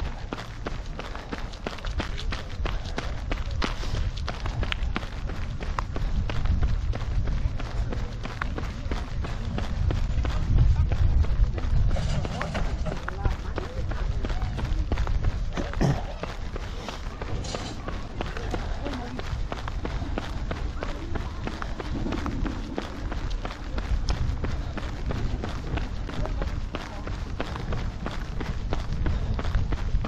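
A runner's footfalls on a tarmac promenade in a steady rhythm, with wind rumbling on the microphone.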